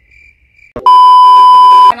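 A loud, steady electronic beep tone that starts just under a second in, holds for about a second and cuts off sharply: a bleep sound effect added in editing.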